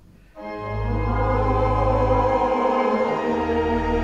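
Church organ playing sustained chords over a deep pedal bass: after a brief break, a new, louder chord comes in about half a second in, and the bass note changes a couple of seconds later.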